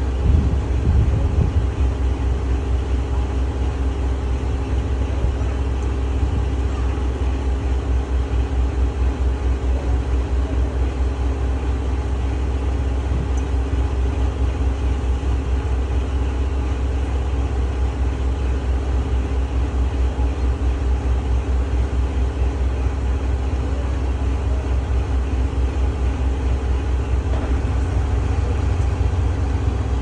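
Boat engine running steadily underway: a constant low drone with a fast, even pulse and a steady hum above it.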